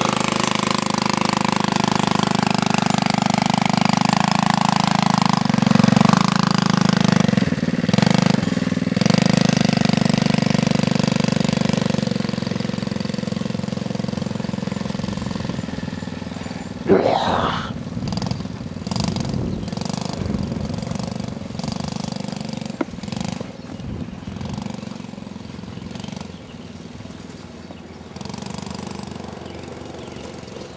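Small youth ATV (four-wheeler) engine running at a steady speed, loud at first and gradually fading as the quad pulls away.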